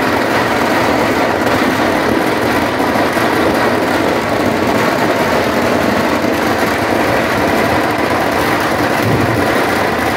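Ground fireworks going off continuously in a loud, steady, dense din with no separate bangs standing out.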